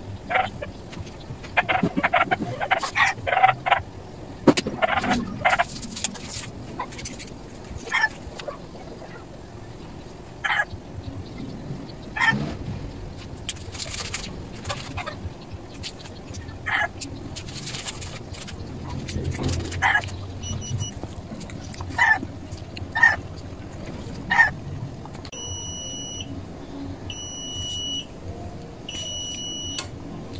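Scattered short sharp sounds, then near the end the electronic buzzer of a coin-operated carwash vendo timer box beeps three times, each beep about a second long. The beeps signal that the paid time has run out, just before the relay cuts power to the output.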